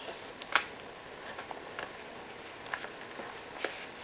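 Faint handling of a plastic mesh zipper pouch and the paper cards inside it, with a few soft, scattered clicks and taps.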